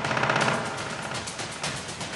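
Dramatic TV background score: a fast rattling percussion roll, loudest in the first half second, then fading into a quick run of percussive hits.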